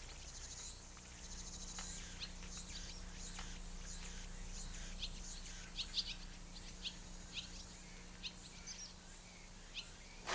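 Small birds chirping in short, scattered calls over steady outdoor background noise with a faint high insect hiss.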